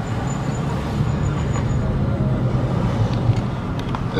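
Steady low road rumble of a moving car, heard from inside the cabin.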